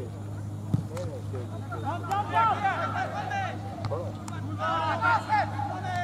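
A football kicked once, a sharp thud about a second in, then players shouting and calling to one another on the pitch in high, arching calls over a steady low hum.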